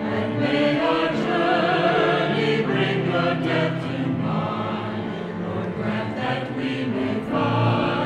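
Mixed church choir singing an anthem together, accompanied by piano and cello.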